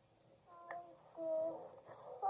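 A toddler's voice making a couple of short, held, sing-song sounds, like humming or cooing, starting about half a second in, with a brief click just before the first.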